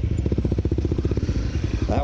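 Dirt bike engine running with a steady, rapid, even beat.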